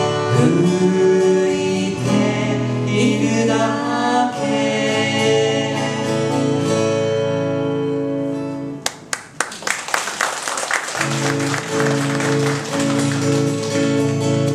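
A man and a woman singing a Japanese folk song to two acoustic guitars. The song ends about two-thirds of the way through, a short burst of applause follows, and acoustic guitar then starts the next song of the medley with no singing.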